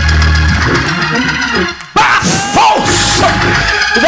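Loud church band music led by organ, playing a driving accompaniment under a sermon building to a praise break. About halfway in, the band drops out briefly, then a long, held cry rises over bright crashes.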